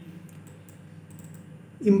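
A few faint, scattered clicks from someone working at a computer during a pause in speech.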